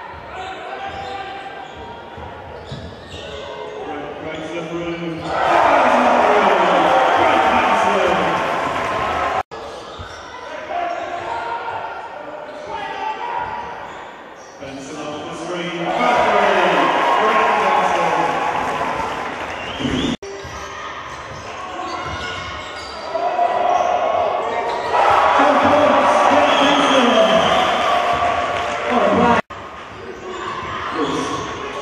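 Basketball game in a sports hall: a ball bouncing on the wooden court amid voices, with the crowd shouting and cheering in three louder surges, about five, sixteen and twenty-five seconds in. The sound drops out briefly at the cuts between clips.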